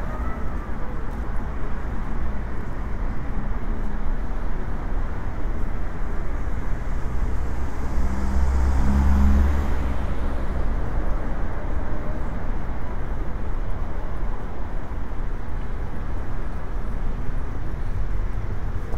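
Steady city road traffic, with one vehicle passing close by about halfway through, its sound swelling and fading away.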